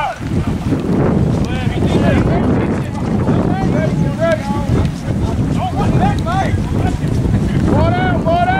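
Wind buffeting the camera microphone in a loud, steady rumble, with shouted calls from players and spectators breaking through every second or two.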